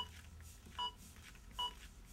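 Zoll AED Plus Trainer 2 CPR metronome beeping to pace chest compressions: short, faint beeps about 0.8 s apart, three in all.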